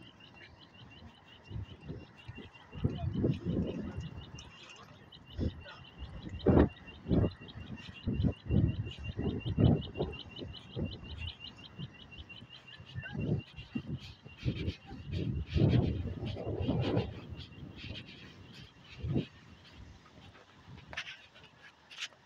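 Audible pedestrian-crossing signal ticking rapidly and evenly, stopping about twelve seconds in, with wind buffeting the phone microphone in low gusty rumbles.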